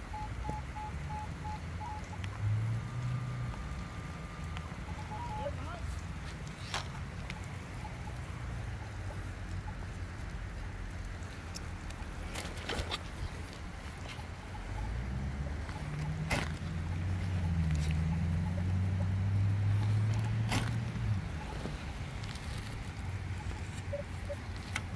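Metal detector giving a run of short, even beeps and then a single held tone on a buried coin target. After that come low handling rumble on the microphone and a few sharp knocks as a hand digger cuts a plug out of turf.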